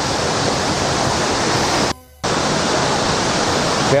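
Steady, loud rush of a tall waterfall heard close to its base, where the spray is drifting over. The sound cuts out abruptly for a fraction of a second about halfway through, then returns.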